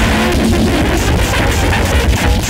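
Loud, dense noise music: a continuous wall of distorted sound with a heavy low rumble, hiss, and a few wavering tones near the start.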